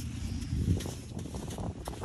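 Soft hoofsteps of a foal walking on arena sand, with low wind noise on the microphone and a few faint clicks.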